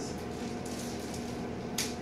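Packaging of a sterile gown pouch rustling as it is pulled open by hand, with one sharp rip near the end, over a steady low hum.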